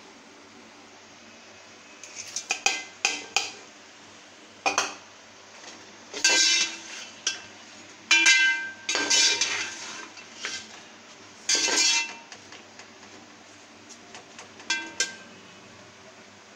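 A metal spoon clinking and scraping against a metal cooking pot in irregular bursts, each strike ringing briefly, as spices are tipped in and stirred into the meat.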